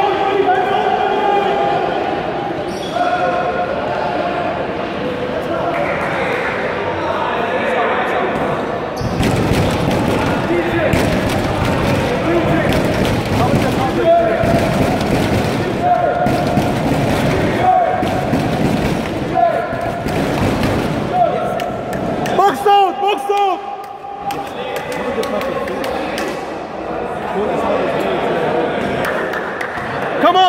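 A basketball bouncing repeatedly on an indoor court, with a quick run of bounces through the middle of the stretch, amid shouting voices in the gym.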